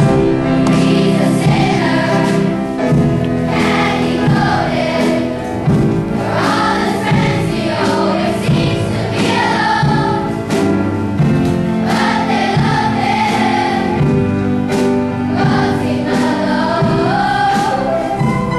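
A group of children singing a song together over an instrumental accompaniment.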